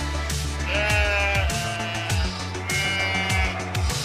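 Background music with a steady beat, over which a sheep bleats twice, once about a second in and again about three seconds in.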